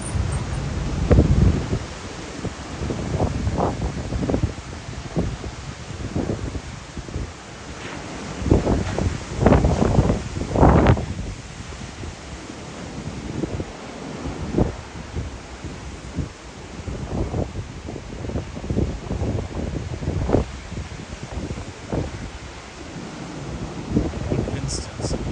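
Strong gusty wind buffeting the microphone in irregular low rumbling blasts, loudest about a second in and again around ten seconds in, over a steady hiss of surf.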